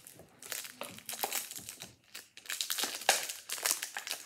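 Foil wrapper of a Pokémon booster pack crinkling and tearing as it is pulled open by hand, in a string of irregular crackles that are loudest about three seconds in. The pack is stubborn and hard to open.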